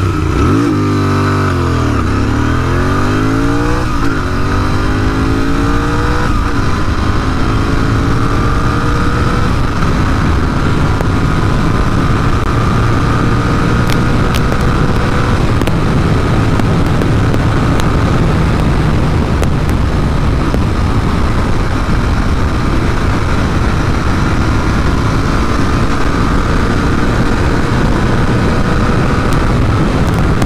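Royal Enfield Interceptor 650's 648 cc parallel-twin engine accelerating hard at full throttle through the gears. Its pitch climbs and drops back at each upshift, about every two to three seconds at first, then stretches out in the higher gears. From about halfway it holds near top speed, and heavy wind noise largely covers the engine.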